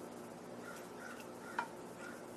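Metal shears snipping through ghost peppers: a few faint squeaks from the blades and one sharp snip about one and a half seconds in, over a steady low hum.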